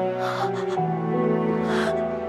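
Slow, sad background music with sustained held notes, and a woman's two sharp, breathy gasps while crying: one near the start and one near the end.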